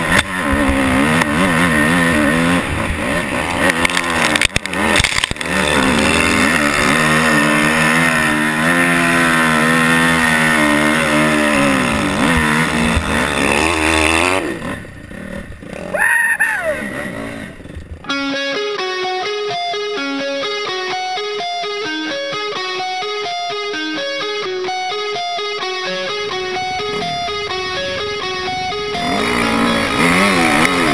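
Dirt bike engine revving up and down under riding load, over a haze of wind noise, for about the first fourteen seconds. After a short dip it gives way, from about eighteen seconds, to guitar music, with the engine returning near the end.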